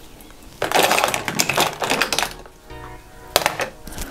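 Makeup containers and tools clattering as someone rummages through a makeup kit: a rattling jumble lasting about a second and a half, then a few sharp clicks near the end.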